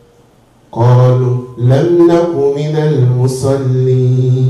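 A man reciting Quranic verses in Arabic in a melodic chanted style, starting just under a second in, with long held notes.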